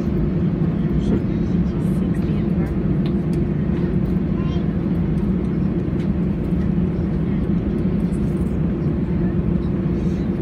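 Inside the cabin of an Airbus A320 taxiing on its engines: a steady low engine rumble with a held hum, without breaks, and faint passenger voices underneath.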